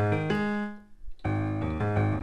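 Multi-sampled grand piano patch in Reason's NN-19 software sampler, played as low notes and chords: a chord rings and fades, and a new chord is struck about a second and a quarter in.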